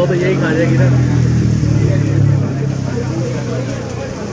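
A road vehicle's engine running close by, a steady low drone that fades near the end, over the chatter of voices.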